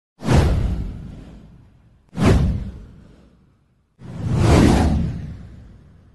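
Three whoosh sound effects from an intro graphic, each a rush of noise that fades away. The first two hit abruptly about two seconds apart; the third swells up more gradually before dying away.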